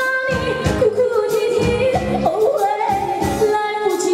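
A woman singing a Mandarin song live into a hand-held microphone, holding long notes with vibrato over a live band with a steady beat; her held note steps up to a higher pitch about two and a half seconds in, then drops back near the end.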